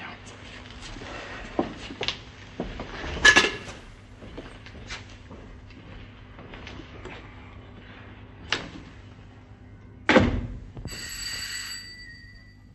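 Door and movement sounds: scattered knocks and clicks, a heavy thud of a door shutting about ten seconds in, then about a second of a steady high ringing tone.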